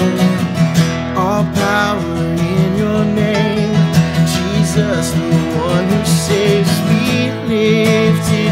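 Two acoustic guitars strummed together under a man's singing voice in a worship song.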